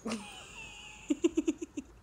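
A woman laughing: a high-pitched wavering sound at first, then a quick run of about seven short giggles in the second half.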